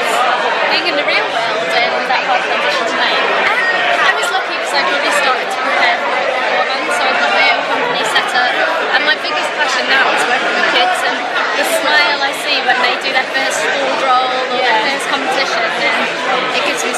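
Many people talking at once in a large hall: a steady hubbub of overlapping voices, with no clear single speaker.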